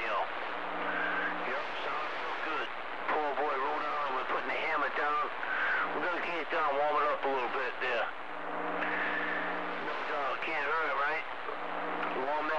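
CB radio receiving another station's voice over a hiss of static, too rough to make out words, with a steady low carrier tone coming through twice.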